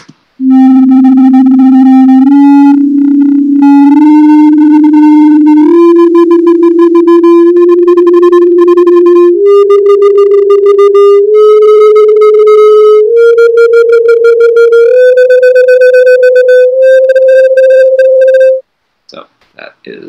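Electronic synthesized tone playing a 13-limit just-intonation microtonal scale on C, rising note by note through about ten held steps of roughly two seconds each, climbing one octave from about middle C. It stops abruptly shortly before the end.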